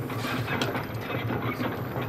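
A mechanism clattering with irregular ratchet-like clicks over a steady low hum.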